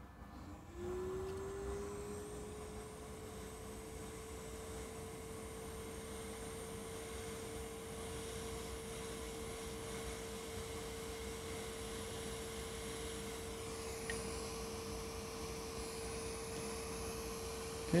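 Hot-air rework station blower starting up about a second in, its whine rising briefly in pitch and then holding one steady tone with a soft hiss of air, as it heats a flux-coated sensor chip to desolder it.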